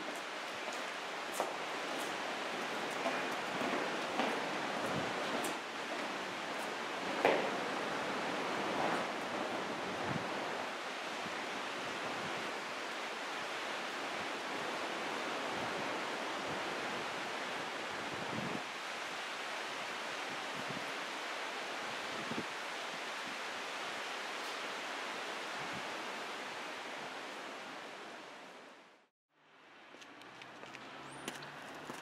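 Steady outdoor rushing noise with a few faint, scattered knocks; it fades away near the end.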